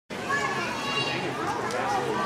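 Overlapping chatter of many voices talking at once, children's voices among them.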